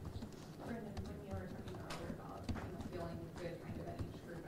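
Faint speech from a voice away from the microphone, with a few scattered sharp clicks.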